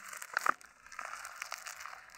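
Irregular crinkling, rustling handling noise with a few sharp clicks, the loudest near the start and about half a second in.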